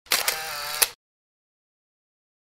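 Camera shutter sound effect: a sharp click, a brief whir, then a second click, all within the first second.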